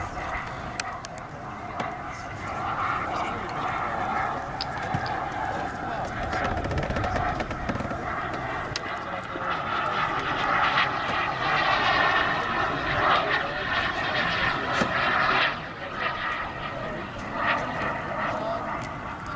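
The turbine engines of a giant-scale radio-controlled F-15 Eagle model jet run as it flies its display, a continuous jet sound that grows louder in the second half and drops away suddenly near the end.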